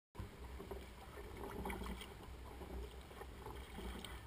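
Faint sound of a fishing kayak moving through calm water: light trickling and small splashes along the hull, over a steady low rumble.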